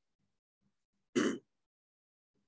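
A man clearing his throat once, a short rough burst about a second in.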